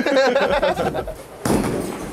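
Men laughing and joking, then about a second and a half in a sudden heavy thud and a rumbling that carries on: a 6 lb bowling ball landing on the wooden lane and rolling.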